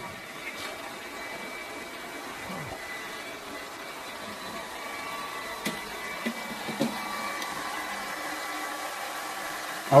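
Hair dryers and fan heaters running together at full blast, a steady noisy blowing whir with a faint high whine.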